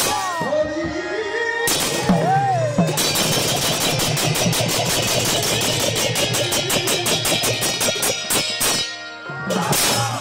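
Large brass hand cymbals clashing and ringing, with drums in the mix. There are two separate crashes, then a fast run of clashes lasting about five seconds, and another crash near the end.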